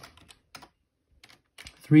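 Computer keyboard keystrokes: a quick run of key clicks, a pause of about half a second, then a few more clicks, typing a new number into a form field.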